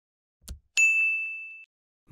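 A soft tap sound effect, then a bright single-pitched notification ding that rings for almost a second, fading before it cuts off. It marks the subscribe button being pressed.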